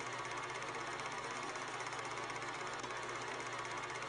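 A steady low hum over a hiss, with a fast, even flutter and no sudden events.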